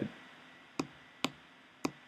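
Three short, sharp computer mouse clicks about half a second apart, over faint room tone.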